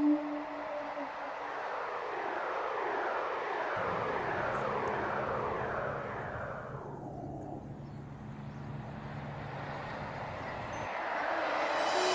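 A whooshing rush of noise like a passing aircraft, with a repeated falling sweep through its first half. A low steady hum joins about four seconds in and stops shortly before the end.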